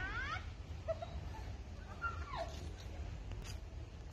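A few short, high-pitched animal calls over a steady low rumble. One whine glides upward right at the start, a brief squeak comes about a second in, and a cry slides downward about two seconds in.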